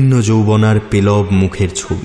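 A man chanting a mantra in a low, steady monotone, in three held phrases.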